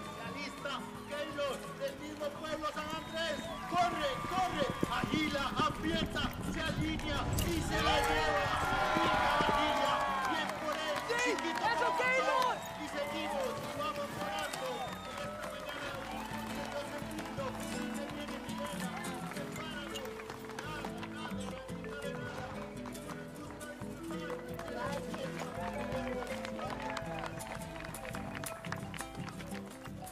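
Film soundtrack music under a crowd shouting and cheering. The crowd is loudest about a quarter to two-fifths of the way through, then settles to a lower murmur of voices over the music.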